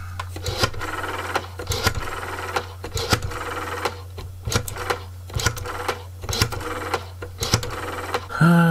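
Rotary-dial desk telephone being dialled: the finger dial is wound round and springs back about seven times, each return giving a quick run of clicks. A steady low hum runs underneath.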